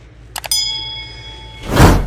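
Subscribe-button overlay sound effect: a quick double mouse click about half a second in, then a bell ding ringing for about a second, then a loud rushing burst near the end.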